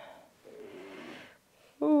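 A person's voice: a faint, short low vocal sound, then near the end a loud 'ouh' exclamation that falls in pitch.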